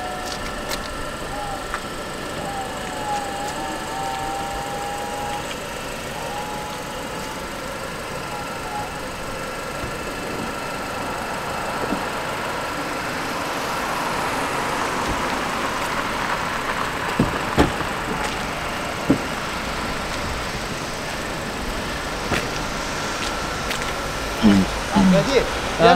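Power-operated fabric soft top of a Mercedes-Benz E-Class Cabriolet closing: a steady motor whine throughout, swelling about halfway, with a few sharp mechanical knocks in the second half as the roof comes down onto the windscreen and latches.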